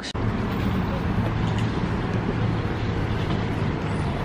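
Steady street traffic noise: an even rumble of passing vehicles with a low hum.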